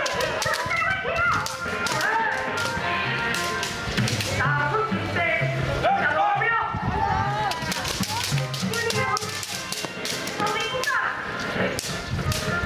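Bamboo kendo swords (shinai) clacking against one another in repeated sharp strikes, mixed with children's shouted calls.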